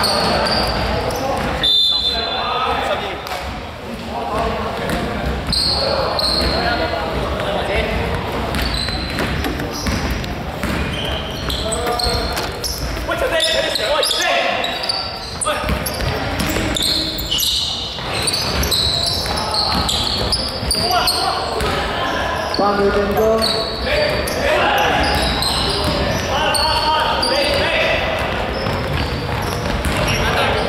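Indoor basketball game in a large, echoing sports hall: a ball bouncing on the hardwood court amid indistinct calls and shouts from players.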